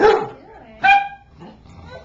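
Dog barking twice in play, two short high-pitched barks about a second apart.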